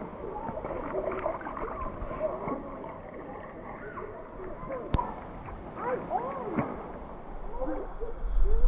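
Creek water lapping and gurgling against a camera held at the water line: a busy run of small bubbly chirps and sloshes, with one sharp click about five seconds in.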